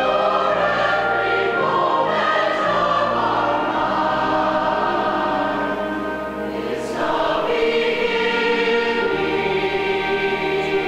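Mixed choir of men and women, a musical-theatre ensemble, singing sustained chords with musical backing. The sound thins briefly about six and a half seconds in, then swells again.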